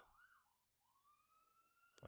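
Near silence: room tone, with a very faint tone gliding slowly upward through most of the pause.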